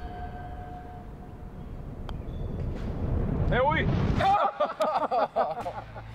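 Low rumble of wind on the microphone that builds over the first four seconds, with a faint click about two seconds in. From about three and a half seconds in, men's voices exclaim with rising pitch and then talk excitedly.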